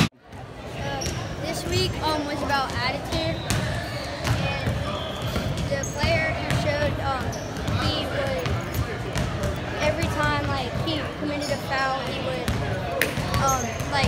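Basketballs bouncing irregularly on a hardwood gym floor, under indistinct children's chatter.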